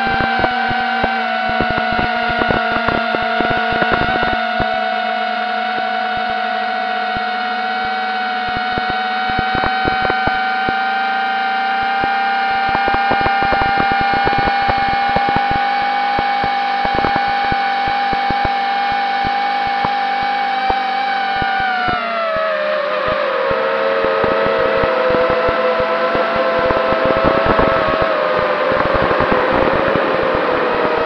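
Quadcopter drone's electric motors and propellers whining steadily, heard close from the drone's own onboard camera, with frequent sharp clicks. About 22 seconds in, the whine glides down in pitch as the motors slow, then holds at the lower pitch.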